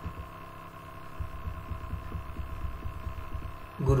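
Steady electrical hum on the recording, with a faint irregular run of low thumps starting about a second in.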